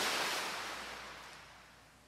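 Ocean surf sound, a steady wash of noise like a wave breaking, fading out gradually.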